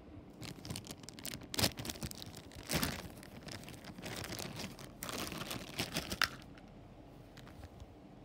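Plastic Happy Meal toy bag crinkling and tearing as it is ripped open by hand: a run of irregular crackles, loudest about three seconds in, dying down near the end.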